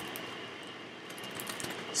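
Quiet room tone with a steady faint hiss and a few light ticks near the end.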